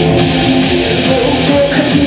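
Loud live industrial rock music from a band, led by electric guitar over a steady, dense backing.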